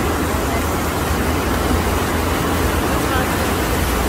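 FlowRider surf machine's sheet of rushing water, a loud steady rush with a deep rumble underneath.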